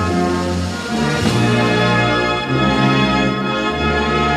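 Military brass band playing slow, sustained chords, the notes held and changing about once a second.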